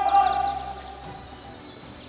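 Military brass band ending a long held chord, which rings away, leaving birds chirping in quick falling notes.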